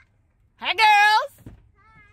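A child's high-pitched, drawn-out wordless call of about half a second, near the middle.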